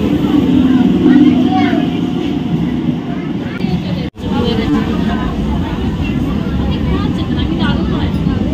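Electric suburban local train rumbling steadily, with the chatter of a crowd of passengers around it. The sound breaks off for an instant about four seconds in, then the rumble and voices carry on.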